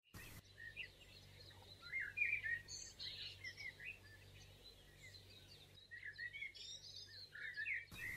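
Faint, short high chirps in two clusters, about two seconds in and again from about six seconds on, over a low steady hum.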